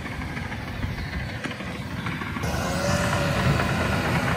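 Crawler dozer's diesel engine running, heard from some way off at first. About two-thirds through, the dozer is suddenly close and louder, with a brief whine that rises and falls as it works.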